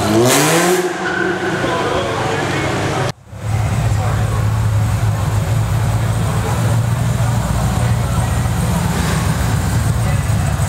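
A Holden Commodore's engine revving up as the car pulls away, its pitch rising over the first couple of seconds after a brief loud burst at the start. The sound drops out for a moment about three seconds in. Then another Commodore's engine runs with a steady low note as it rolls past at low speed.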